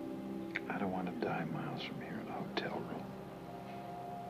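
Whispered words, a short run of them with sharp hissing consonants, from about half a second in to about three seconds in, over soft background music of steady held notes.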